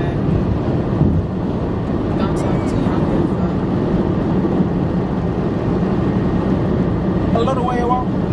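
Steady road and engine rumble heard inside the cabin of a moving car, with a voice briefly near the end.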